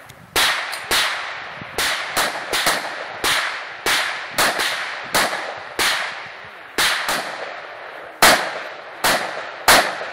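A string of about sixteen gunshots fired at a steady, fairly quick pace, roughly one every half to one second, each crack followed by a short echo. Two shots near the end are the loudest.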